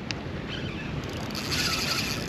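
Wind buffeting the microphone over water lapping against a small boat's hull, a steady rumbling hiss. A brief higher hiss rises in the second half, and there is one faint click at the very start.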